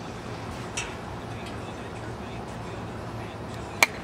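Golf club striking a ball off a turf hitting mat: one sharp, loud crack near the end, over a steady outdoor background.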